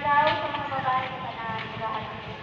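A person's voice in a drawn-out phrase with held pitches, over steady outdoor background noise.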